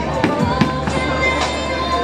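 Bowling alley din: sharp clatters of bowling balls and pins, over background music playing over the alley's speakers.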